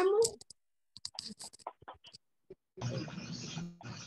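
Faint scattered clicks and crackles over a video-call connection. From about three seconds in, an open microphone brings in a steady hiss of background noise with muffled low sounds underneath.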